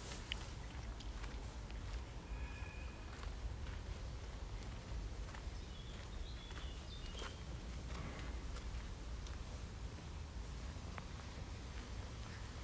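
Footsteps on a dirt and gravel path over a steady low rumble, with a few brief bird calls about two to three seconds in and again around six to seven seconds in.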